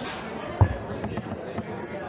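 Foosball table in play: the ball and rods clack against the players and the table, with one loud, deep knock about half a second in.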